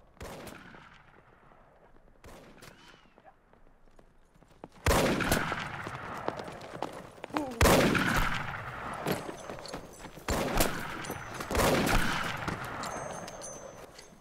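Gunshots, six in all and spaced a few seconds apart, each ringing out with a long echoing tail. The first two are fainter; the last four are much louder.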